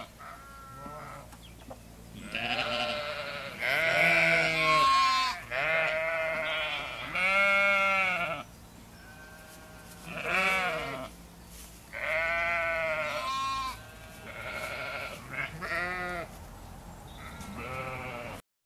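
Sheep bleating repeatedly: a series of wavering bleats, each about a second long, with short pauses between them.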